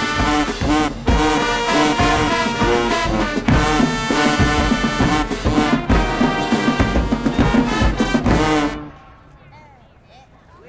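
High school marching band playing a brass tune, horns over heavy drum hits. The band cuts off sharply near the end, leaving faint voices.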